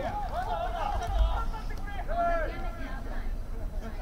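Several raised voices on and beside an open football field calling out and shouting to one another as the teams line up for a play, with a couple of longer drawn-out calls overlapping.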